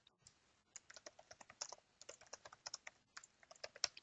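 Computer keyboard typing: a quick, faint run of key clicks, about twenty strokes, beginning under a second in.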